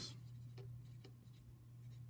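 Graphite pencil writing on paper: faint, irregular scratching strokes as words are written out by hand, over a steady low hum.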